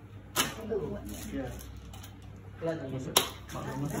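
Two sharp clicks from a baby stroller's frame parts being pressed into place. The first comes about half a second in and the second, louder one about three seconds in.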